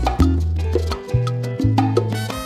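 Traditional Cuban son in septeto style: a Moperc bongo struck by hand in a quick pattern over a backing band, with low sustained notes changing about every half second.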